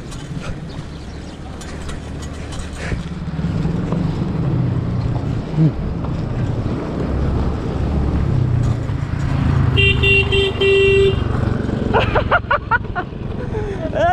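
Motorcycle engine rumble growing louder as it approaches and passes, over the noise of a bicycle rolling on a gravel road. About ten seconds in, a vehicle horn toots for about a second.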